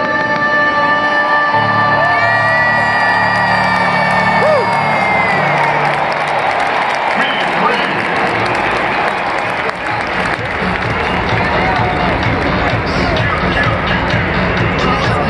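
The last held note of the national anthem, sung over the stadium sound system with accompaniment, ends about five seconds in. A large stadium crowd then cheers and whoops loudly and steadily.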